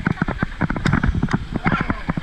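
Wave-pool water slapping against an inflatable tube and the action camera, a rapid, irregular run of short hollow knocks, several a second.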